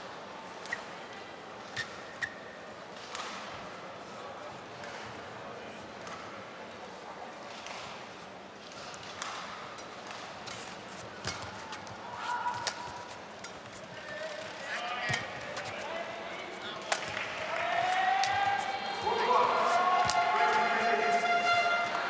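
Badminton rally sounds: sharp cracks of rackets striking the shuttlecock and short squeaks of shoes on the court. Crowd voices rise and grow louder over the last few seconds.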